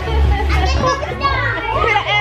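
Children's voices and lively chatter in a room, with background music underneath.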